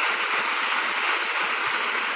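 Steady, even hiss-like background noise with no distinct events, holding level throughout.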